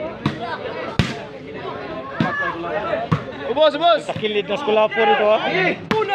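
A volleyball being struck by hand during a rally: a few sharp slaps, the loudest about a second in, over the voices of a large crowd of spectators that grow louder with shouting near the end.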